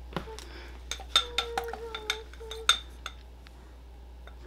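Glass beaker clinking as a pocket pH tester's probe is dipped and stirred in it, knocking against the glass: about half a dozen light, ringing clinks over the first three seconds.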